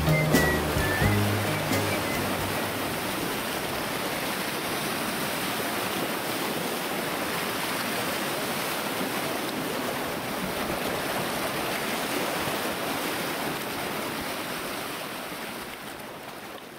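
Water rushing and splashing around rocks, a steady even noise; the last notes of a song die away about a second in, and the water sound fades out near the end.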